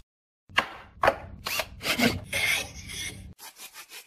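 A series of rasping strokes of a hand tool across wood, like sawing or filing. The strokes start about half a second in and are louder for the first few seconds. After that they turn fainter and come closer together.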